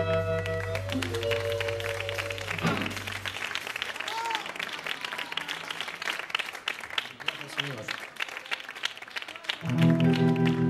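A rock band's last chord on electric guitar and bass rings out and stops about three seconds in. It gives way to an audience clapping and cheering, with a short whistle. Sustained electric guitar tones come back in near the end.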